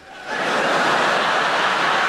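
Live theatre audience applauding and laughing after a punchline, swelling in just after the start and then holding steady.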